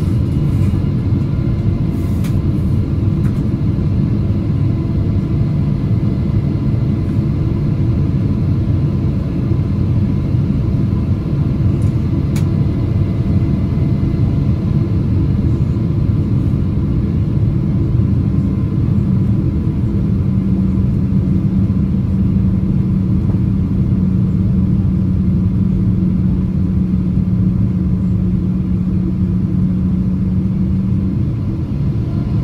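Steady cabin rumble of a Boeing 777-200ER on approach, its Rolls-Royce Trent 800 engines and the rushing airflow heard through the fuselage by the wing. A steady low hum joins about two-thirds of the way through.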